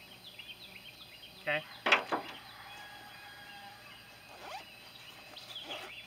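Faint outdoor birdsong: many short, high chirps from birds in the trees. About two seconds in there is a brief rustle of a cable being handled and packed into a soft bag.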